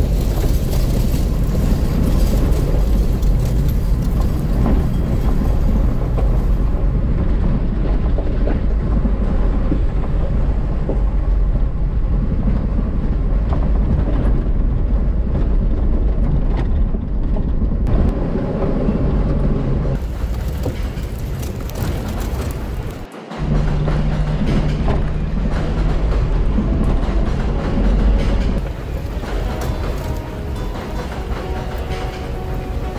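A Jeep driving at low speed on a gravel rail trail, engine and tyre rumble heard from inside the cab as it runs through a long rock tunnel and out into the open. About 23 seconds in, the sound breaks off briefly and music takes over.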